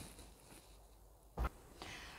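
Quiet room tone with a single short knock about one and a half seconds in.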